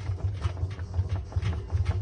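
Irregular soft clicks and rubbing from a hand handling the rubber door seal of a front-loading washing machine, over a steady low hum.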